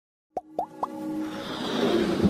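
Animated logo intro sting: three quick plops about a quarter second apart, then a rising swell of electronic music.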